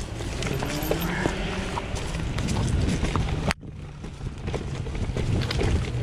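Mountain bike riding down rocky forest singletrack: a steady rumble of tyres rolling over stones and loose ground, with frequent knocks and rattles from the bike as it hits rocks. The sound drops out briefly about three and a half seconds in.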